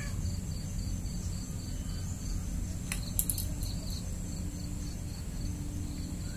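Insects chirping steadily: a high continuous buzz with a short chirp repeating a few times a second, over a low steady rumble. There are a couple of sharp clicks about three seconds in.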